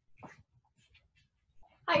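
Near-quiet room with a few faint knocks, then a young woman's voice calling out a cheerful "Hi" near the end.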